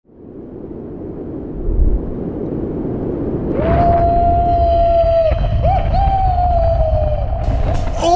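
A man screaming during a bungee jump: two long, steady-pitched yells, the first starting about three and a half seconds in, over a rushing noise and low rumble that build from the start.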